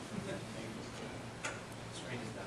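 Quiet hall room tone with two short sharp clicks, about a second and a half in and near the end.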